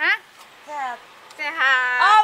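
A woman's high-pitched, wordless voice in short sing-song calls that slide in pitch, about three in two seconds.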